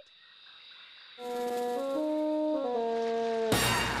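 Cartoon underscore music: after a quiet first second, a brass melody of held notes enters, stepping mostly downward. Just before the end a sudden loud noisy burst cuts in.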